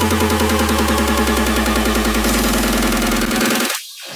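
Hard dance music from a DJ mix: a build-up with a fast repeating pulse over a held bass note. The pulse quickens about two seconds in, then the music cuts out just before the end.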